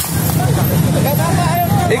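Several men talking over one another outdoors, over a steady low rumble. No distinct non-speech sound stands out.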